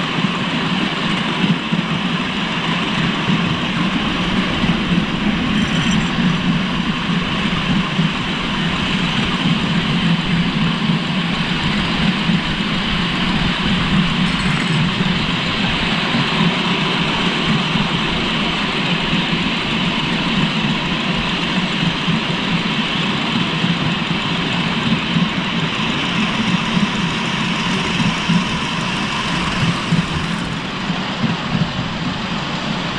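Riding behind a miniature coal-fired steam locomotive: a steady, loud rumble and rattle of the riding car's small wheels running on the raised track.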